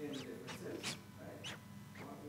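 A man's voice speaking quietly, the words not clear enough to make out.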